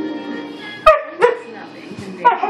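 A husky giving two short, sharp barks about a third of a second apart, demanding his bone. TV adverts with speech and music run underneath.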